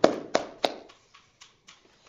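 Scattered hand claps from a few people, a handful of sharp separate claps that thin out and die away after about a second.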